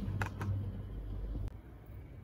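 Faint handling of a small plastic wireless lapel microphone transmitter, with two light clicks in the first half second over a low background hum.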